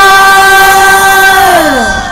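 A man's singing voice belting a long, loud high note, held steady at one pitch, then sliding down and trailing off near the end.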